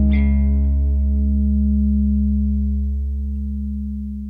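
A punk rock band's closing chord on guitar and bass, struck once more just after the start and left to ring out, slowly dying away toward the end.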